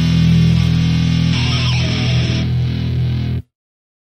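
Metalcore recording with distorted electric guitars and bass holding a ringing chord, which cuts off abruptly about three and a half seconds in, leaving dead silence as the song ends.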